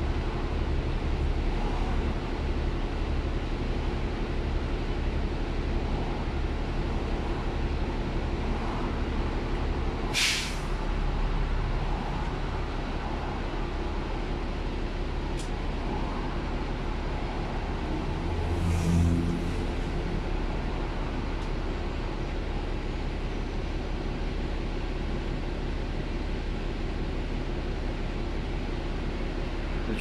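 The diesel engine of an Enviro400 double-decker bus drones steadily, heard from inside on the upper deck, on a run described as really sluggish. A short hiss of released air comes about ten seconds in, and a softer hiss follows a little before twenty seconds.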